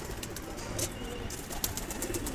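A flock of domestic pigeons cooing softly, with a few light clicks.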